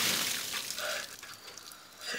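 A bucket of ice water tipped over a person: a sudden loud splash of water that dies down over the next second.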